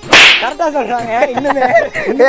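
A whip-crack sound effect: one sudden, loud swish just after the start, followed by a warbling pitched sound that wavers up and down.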